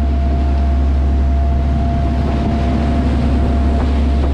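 Sportfishing boat's engines running steadily underway, a deep unbroken drone with water rushing past the hull and a thin steady whine above it.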